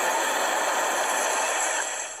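Fire-breathing sound effect of a Snapchat chili-pepper face lens: a steady rushing hiss of flame, fading out just after the end.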